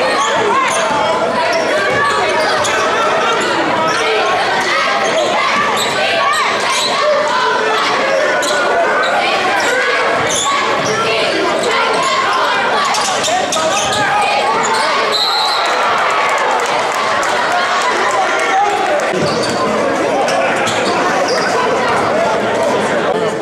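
Basketball dribbled on a hardwood gym floor during a game, with crowd and player voices echoing in the gym throughout.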